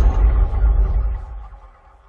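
The tail of an intro sting: a deep, rumbling boom dying away and fading out shortly before the end.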